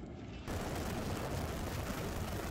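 A steady rushing, crackling noise of an aircraft in flight starts abruptly about half a second in. Before it there is a short stretch of quieter, duller outdoor background.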